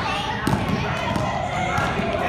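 A basketball dribbled on an indoor gym floor: sharp bounces, one about half a second in and another near the end.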